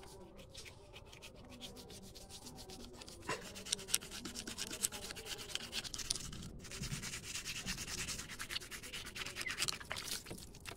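Toothbrush scrubbing quickly back and forth over a cow's teeth with toothpaste: a fast, even run of scratchy brushing strokes. It grows louder after about three seconds and breaks off briefly about two-thirds of the way through.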